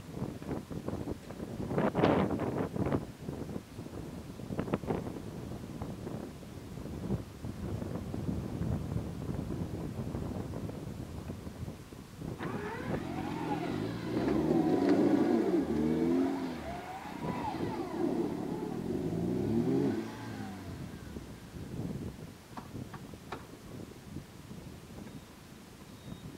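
Modified off-road 4x4's engine revving in uneven bursts under load as it climbs a steep dirt bank, with sharp knocks along the way. From about halfway through it holds louder, sustained revs that rise and fall while the wheels spin, then drops back near the end.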